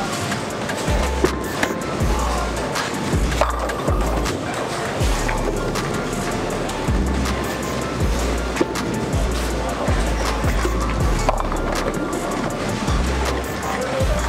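Background music with a repeating bass line over bowling-alley noise: bowling balls rolling down the lanes and pins clattering, with sharp knocks scattered throughout.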